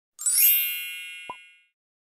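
A bright bell-like ding sound effect, the kind of notification chime used on subscribe-and-bell animations, rings out and fades over about a second and a half, with a short click about 1.3 seconds in.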